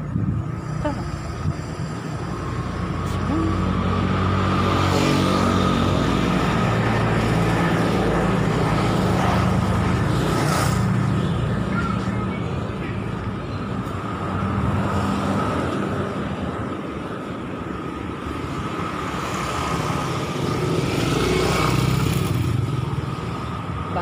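Street traffic: motor vehicles running along the road with a steady low engine hum, swelling louder a few seconds in and again near the end as they pass.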